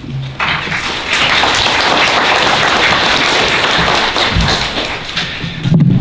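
An audience applauding, starting about half a second in and dying away near the end.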